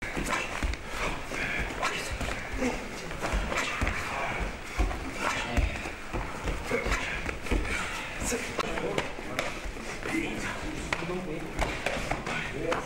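Indistinct chatter of many people in a reverberant hall, with frequent irregular thuds of bare feet stepping and stamping on dojo mats as karateka practise.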